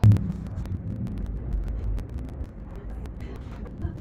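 Low rumbling outdoor noise of wind on the microphone and distant traffic, opening with a sharp thump, with a few light clicks scattered through.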